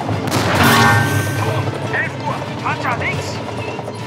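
A tank's main gun firing: one heavy blast about a third of a second in, fading into a long rumble, with film music underneath.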